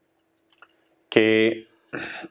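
A man speaking a single short word about a second in, after a faint click about half a second in; otherwise quiet room tone with a faint steady hum.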